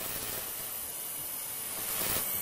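Steady hiss from the neon-logo sound effect, growing slightly louder near the end.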